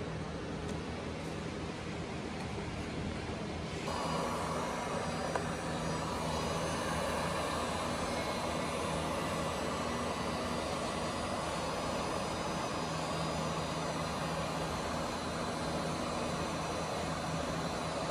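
Heat gun switched on about four seconds in, then blowing with a steady, even rush of air as it heats spliced sensor wires.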